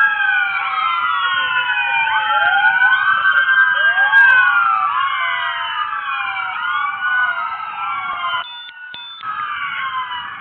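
Several emergency-vehicle sirens sounding at once, their rising and falling tones overlapping. They dip briefly near the end.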